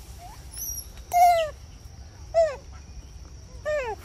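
Macaque giving three short calls about a second apart, each falling in pitch, over a steady high-pitched background tone.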